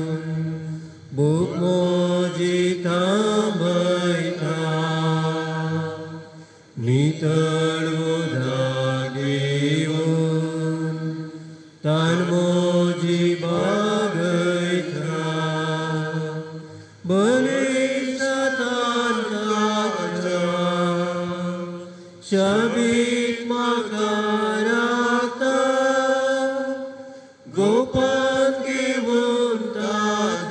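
A church hymn sung slowly in long, held phrases of about five seconds each, with a short break for breath between phrases.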